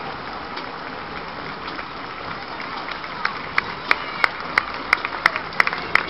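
Murmur of a street crowd, then from about halfway in a steady beat of sharp hand claps, about three a second.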